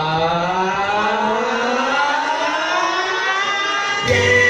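A siren-like synth sweep rising steadily in pitch through a break in a children's dance-pop song, with the bass and beat dropped out.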